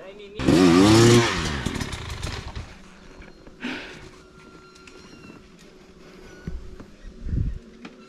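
Dirt bike engine revved hard in a burst about half a second in, pitch rising and falling, then easing off to a low steady running with a thin whine. A second short rev comes near four seconds, and a dull thump near the end.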